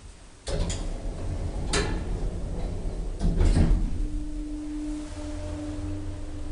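Thyssen elevator's mechanism in operation: a run of sharp clicks and knocks, as from sliding doors and their lock, then a steady hum that sets in about four seconds in.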